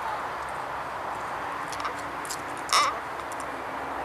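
Steady open-air background noise, broken about three-quarters of the way in by one short, loud, harsh cry.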